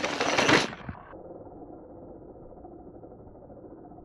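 Mountain bike tyres rolling over dirt and rock, loudest about half a second in, then dropping off suddenly to a faint, muffled steady rumble.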